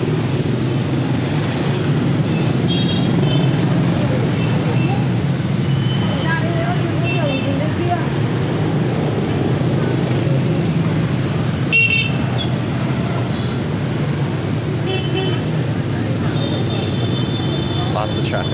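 Busy street traffic of motorbikes and scooters: a steady engine drone with about half a dozen short horn toots through it and a longer honk near the end. A sharp knock sounds about twelve seconds in.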